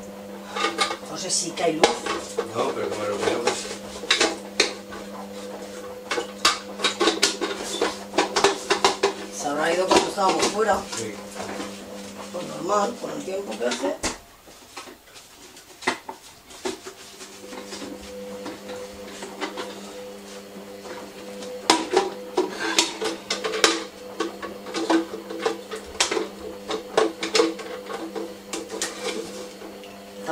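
Dishes and plastic containers clattering and knocking at a kitchen sink as they are washed and set down, with many sharp clinks. Behind them runs a steady appliance hum that drops out for a few seconds about halfway through.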